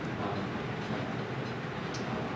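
Steady room noise in a classroom: an even, constant hiss and rumble with no distinct events.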